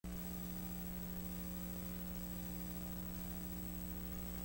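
Steady low electrical mains hum with a buzz above it, unchanging in pitch and level.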